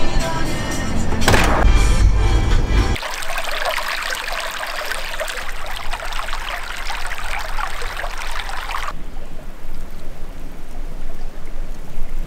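A shallow stream runs over a snag of fallen branches, an even watery rush that starts about three seconds in and eases off near nine seconds, under background music. The first seconds hold a low rumble instead.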